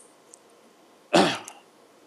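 A single short throat-clearing cough about a second in, with quiet around it.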